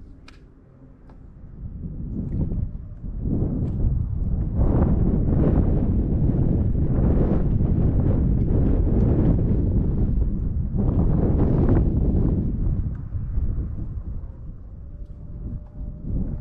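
Wind gusting across the camera microphone: low, irregular buffeting that builds about two seconds in, stays strong for about ten seconds and eases near the end.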